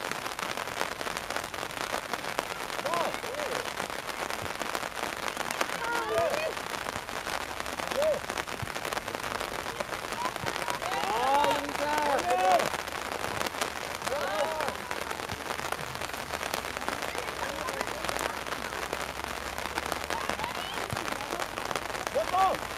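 Scattered high-pitched shouts and calls from young players and onlookers at a youth football match, over a steady crackling hiss. The calls bunch together into several voices about halfway through.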